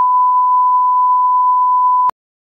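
Censor bleep: a loud, steady beep at one pitch, the sine tone laid over the dialogue in editing to blank out a word.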